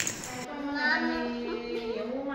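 A small child singing in long, held notes, starting about half a second in.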